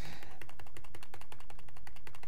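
Rapid, evenly spaced run of small plastic clicks, about a dozen a second, from a computer's input controls as the stock chart on screen is zoomed out.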